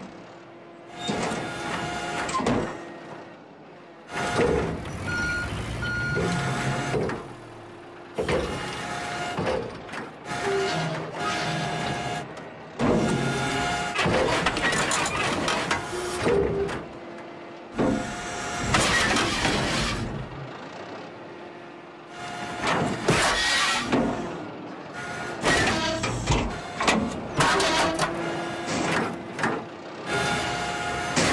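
Cartoon excavator sound effects: the machine's engine running while its hydraulic arm whines and clunks through a long string of short stop-start moves.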